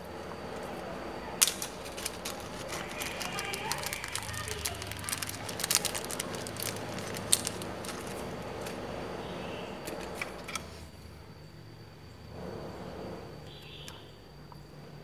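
Small zip-lock plastic bag of Hall-sensor ICs handled between the fingers: irregular sharp crinkles and clicks over a low steady hum, stopping about ten seconds in.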